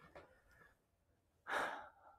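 A person's single short, breathy sigh about one and a half seconds in.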